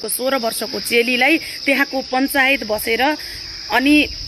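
A woman speaking, over a steady high-pitched drone of insects.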